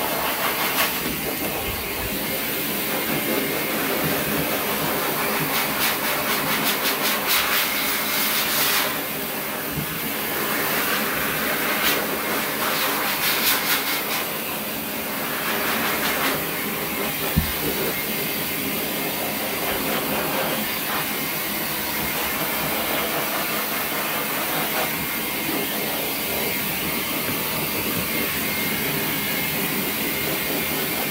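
Hose-fed dog grooming dryer blowing a steady rush of air over a wet puppy's coat, the hiss swelling and easing as the nozzle is moved. A single sharp knock a little past halfway.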